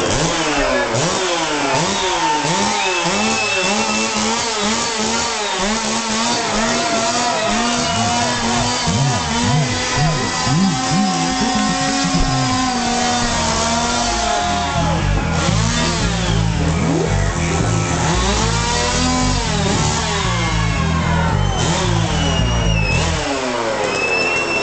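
A Stihl chainsaw revved up and down again and again as a stage instrument, its engine pitch sweeping up and down throughout. About halfway through, the band's low bass and drums join underneath.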